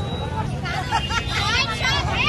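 Crowd of protesters' voices, with loud high-pitched shouting rising and falling from about half a second in, over a steady low rumble.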